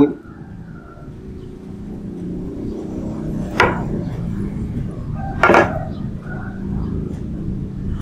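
A low, steady background rumble that swells slightly after the first second, with two short, sharp knocks about three and a half and five and a half seconds in.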